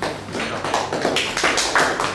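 Applause: several people clapping their hands, a dense patter of claps that grows louder towards the end.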